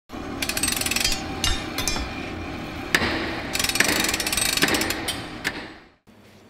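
Workshop tool noise: two runs of rapid mechanical rattling and several sharp knocks over a steady low rumble, fading out near the end.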